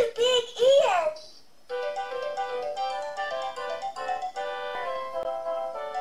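VTech Shake & Sing Elephant Rattle's electronic voice plays a short sing-song phrase, then after a brief pause its chiming electronic melody starts about two seconds in and carries on.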